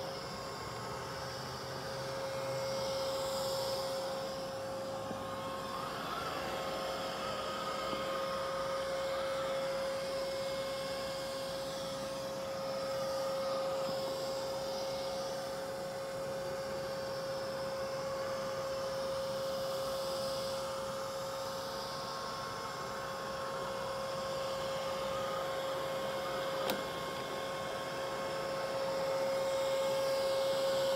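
Neato robot vacuum running on carpet: a steady motor whine with a strong single tone over the hiss of its suction. There is one brief knock near the end.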